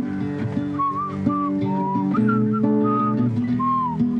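A person whistling a tune in short, gliding notes over a nylon-string classical guitar.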